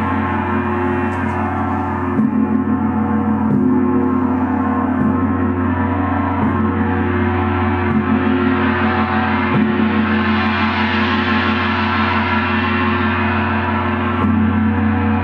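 A large gong played with soft round-headed mallets, struck about every second and a half, so that its dense shimmering tone rings on continuously. The tone builds and brightens after about eight seconds.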